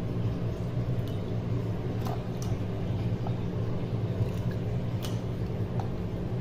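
Raw mutton pieces being moved by hand in a steel pot, with a few faint clicks and soft squishes, over a steady low hum.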